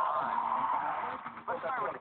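Studio audience cheering and applauding, heard tinny through a television's speaker; it eases off about a second and a half in as a man starts speaking.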